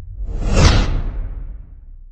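A whoosh sound effect that swells to a peak a little over half a second in and then fades away, over a low rumble that dies out toward the end.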